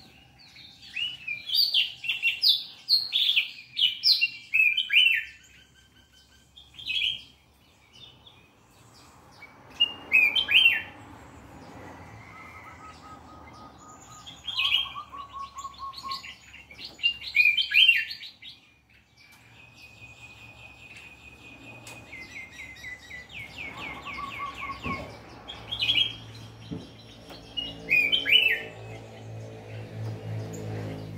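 A caged crested songbird (the 'cang jambul') singing in short bursts of quick, high chirping whistles and trills, phrase after phrase with pauses of a few seconds between them.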